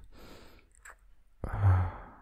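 Close-miked kissing sounds from a man: a faint breathy exhale and a soft lip smack about a second in, then a loud hummed sigh near the end.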